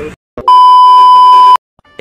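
A single loud, steady electronic beep about a second long, an edited-in sound effect like a censor bleep, with a brief silence either side.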